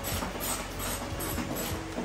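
Background music with a steady beat, its held note dropping to a lower one about one and a half seconds in.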